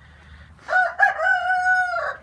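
Rooster crowing: two short notes, then one long held note.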